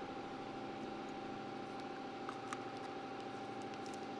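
Steady hum of running shop machinery with a constant whine, and a few faint light clicks from small parts handled in the hands.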